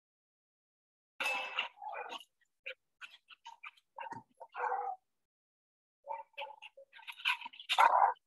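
Dogs vocalising as they scuffle during rough play in a shelter playgroup, a run of short, scattered sounds starting about a second in and growing busier near the end.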